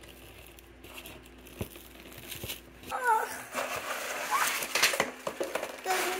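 Handling of a cardboard box and the clear plastic bag around a cordless reciprocating saw as it is unpacked. There are faint taps and clicks at first, then louder plastic crinkling and cardboard rustling from about three seconds in.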